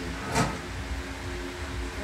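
A movie soundtrack heard through a TV's speakers in a room: a low steady hum with a few faint held tones, broken by one short spoken word about half a second in.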